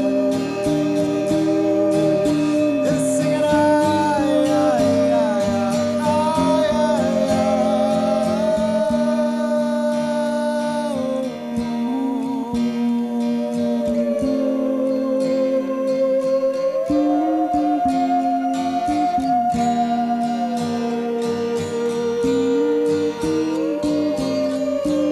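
Live band music: a man singing at the start, then a sustained, gliding electric lead guitar line played over steady held low notes.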